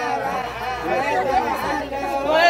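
Several people talking at once, voices overlapping into chatter.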